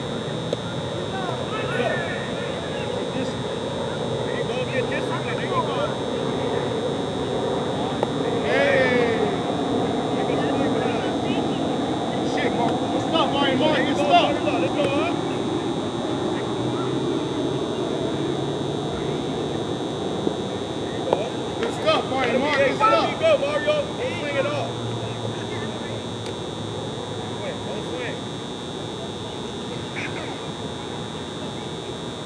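Indistinct voices of players and spectators around a softball field, with several louder shouts and calls coming in clusters, the busiest a little past the middle. A steady high-pitched whine runs underneath throughout.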